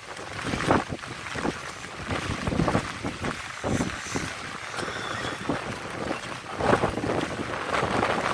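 A vehicle wading through floodwater on a road: water sloshing and splashing in irregular surges, with wind buffeting the microphone.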